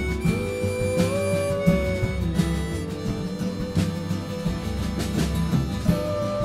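Acoustic folk band playing an instrumental break: a harmonica carries long held melody notes over strummed acoustic guitars, bass and a steady drum beat.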